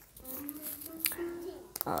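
A woman humming one soft, held note for about a second and a half, with a few light clicks of a small tarot deck being handled.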